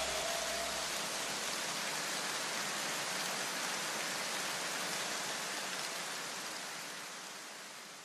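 A steady hiss like rain or static, fading slowly and dying away near the end.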